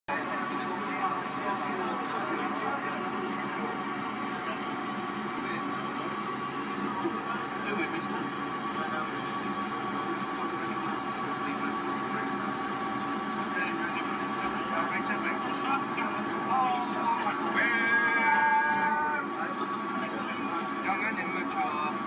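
Old videotape of a bus ride played back through a TV speaker: the running vehicle's noise mixed with indistinct voices, under a steady high whine. Near the end a held note with several tones sounds for about two seconds.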